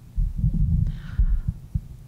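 Microphone handling noise: low, irregular thumps and rumble as a microphone is picked up and moved into place.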